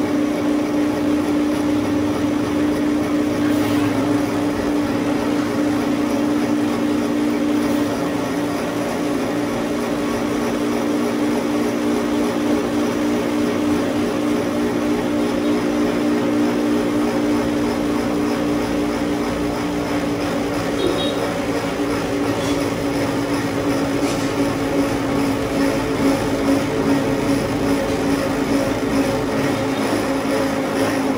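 Cotton candy machine's spinning head motor running with a steady hum while it spins sugar into floss.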